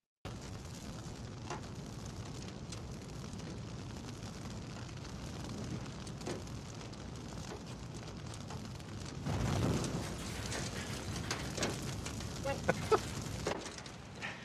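A car fire burning with steady crackling. It swells louder about two-thirds of the way through, and a few sharp pops come near the end.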